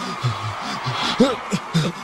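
Short, broken bursts of a man's voice, non-verbal, like laughing or heavy breathing sounds, with a few sharp clicks near the end.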